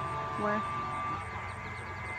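A single short spoken word over steady background noise, with a thin steady high tone through the first half.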